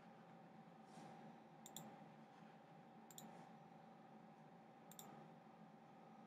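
Near-silent room tone with faint clicks of a computer's pointer button: three short double clicks, about 1.7, 3 and 5 seconds in.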